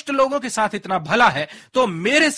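Speech only: a man talking steadily, with a brief pause about three-quarters of the way through.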